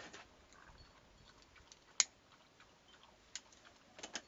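Handling noise on a handheld phone: scattered faint clicks and taps, with one sharp click about halfway through.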